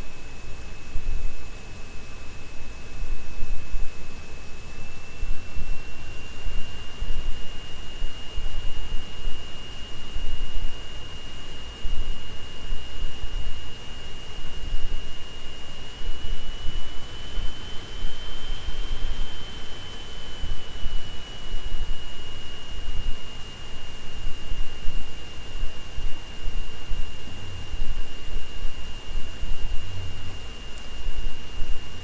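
Steady background noise with an uneven low rumble and a thin, constant high-pitched whine that edges up in pitch a few seconds in and rises a little more for a few seconds past the middle before settling back.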